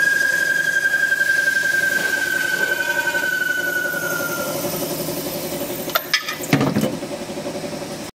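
Automatic pipe-nipple cutting machine at work: the cutter on the spinning metal pipe gives a steady high squeal that slowly sinks in pitch and fades over the first four and a half seconds, over the machine's constant running hum. About six seconds in come a few sharp metallic clanks.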